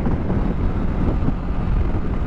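Bajaj Dominar 400 motorcycle's single-cylinder engine running steadily at highway cruising speed, under wind rush on the helmet microphone.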